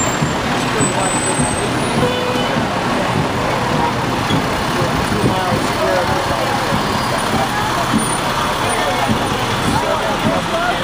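Fire trucks' diesel engines running steadily as the trucks pass close by, with people talking over them.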